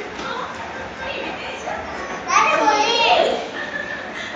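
Young children's voices at play, with a loud, high child's cry about two and a half seconds in that rises and falls in pitch for about a second.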